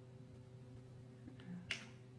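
A single sharp click near the end, a crayon knocking against the other crayons in the box as it is put back, with a faint tick just before, over a faint steady hum.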